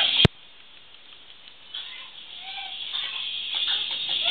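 A sharp click, then a quiet stretch, then a baby's faint short cooing call about halfway through.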